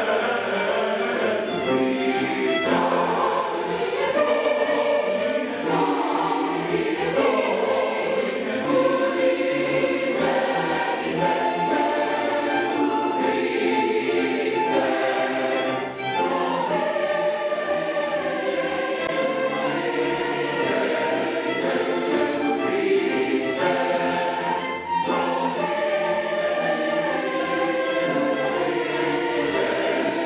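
Large mixed choir singing with a string orchestra in full classical choral style, the music running on with two brief breaks between phrases.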